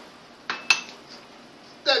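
Seal-stamping things being put down on a desk: a short scrape about half a second in, then a single sharp clink with a brief ringing tone, like a small hard object or lid knocked against ceramic.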